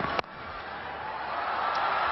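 A cricket bat strikes the ball once with a sharp crack just after the start, then the stadium crowd's noise swells into a cheer as the ball carries toward the boundary.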